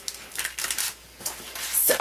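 Light clicks and rustles of paper and craft supplies being handled on a work table, in short irregular bursts.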